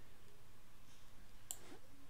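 A single computer mouse click about one and a half seconds in, over faint room tone.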